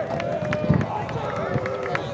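Players and sideline voices shouting during a lacrosse game, over a scatter of short sharp clicks and knocks from sticks and running feet.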